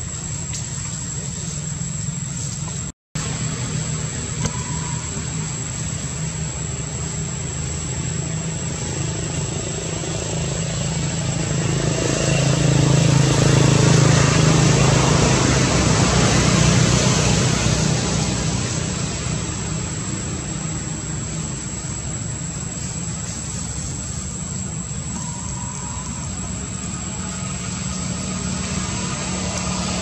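A motor vehicle's low engine rumble and road noise, growing louder to a peak about halfway through and then fading as it passes, over a thin steady high-pitched whine. The sound cuts out briefly about three seconds in.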